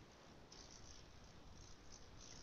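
Near silence: faint, even background hiss.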